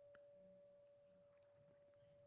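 Near silence, with a faint steady high tone.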